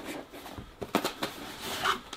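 Cardboard product box being handled and opened by hand: a string of light, sharp taps and scrapes of paperboard.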